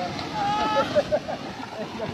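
People talking in a local language over steady background noise.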